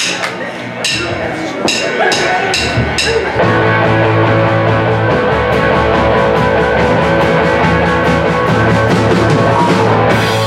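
A live rock trio of electric guitar, electric bass and drum kit starting a song: a few sharp, evenly spaced hits count it in, then about three and a half seconds in the full band comes in playing a steady rock groove.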